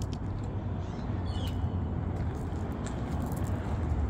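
Steady low rumble of outdoor background noise, with a few faint ticks scattered through it.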